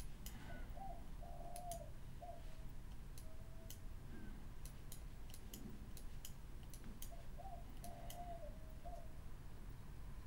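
Faint, scattered clicks of a computer mouse as the filter's radius slider is worked. Behind them a bird calls twice, the same short phrase of low notes each time, about seven seconds apart.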